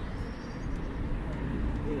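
A low, steady outdoor rumble of background noise with no distinct events, and a voice starting right at the end.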